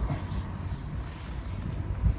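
Low, fluctuating rumble of wind on the microphone, with no distinct tool clicks.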